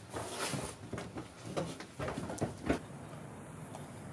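Footsteps and knocks on a wooden plank floor with rustling of clothing and gear in a small room. A run of short knocks comes near the middle, then it settles to a quieter background.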